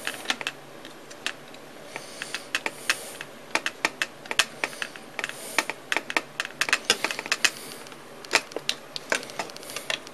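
Small metal tools and hardware clicking and tapping as a wrench turns nuts onto bolts through an aluminium panel: irregular sharp clicks, coming thickest in quick clusters through the middle.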